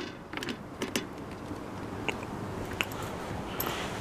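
Light clicks and knocks from a deep fryer's basket being fitted into place: a cluster in the first second, then a few scattered ticks over a faint steady background noise.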